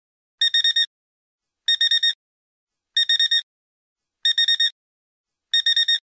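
Electronic alarm beeping: five bursts of four quick high-pitched beeps, one burst about every 1.3 seconds, in the classic digital alarm-clock pattern.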